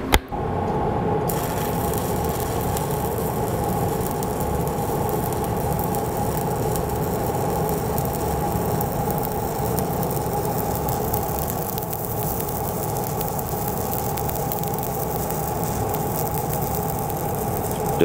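Shielded metal arc (stick) welding with a 3/32-inch E7018 electrode running a fill pass on steel pipe. A short pop as the arc is struck right at the start, then a steady crackling sizzle that runs on without a break.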